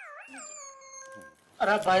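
A short howl-like pitched sound effect that wobbles up and down twice, then holds and fades out. A man starts speaking near the end.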